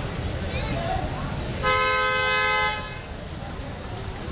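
A vehicle horn honks once, a steady chord-like tone lasting about a second, around the middle, over a constant low street rumble.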